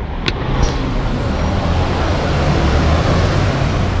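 Street traffic: a motor vehicle passing close by, a loud rush of engine and tyre noise that builds over the first couple of seconds and holds.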